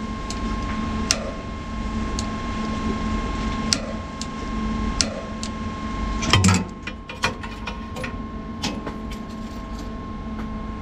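Metal wrench and extension clicking and knocking against fittings as an igniter lead nut is tightened by hand. The clicks come singly about a second apart, then a burst of louder knocks about six and a half seconds in, followed by a quick run of small clicks. A steady hum runs underneath.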